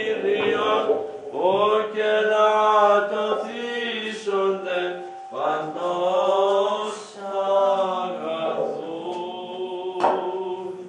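Greek Orthodox Byzantine chant sung by a male voice, holding long drawn-out notes that bend slowly, with a brief pause for breath about five seconds in.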